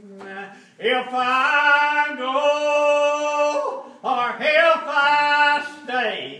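A man singing a hymn unaccompanied in the slow Old Regular Baptist manner, drawing out long held notes with slow slides in pitch; he pauses briefly just before one second in and again near four seconds.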